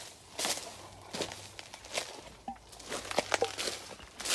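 Footsteps through dry dead banana leaves and leaf mulch: a series of short, uneven steps.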